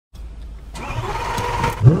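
A car engine running with a low, steady rumble. A louder, noisier stretch comes in under a second in.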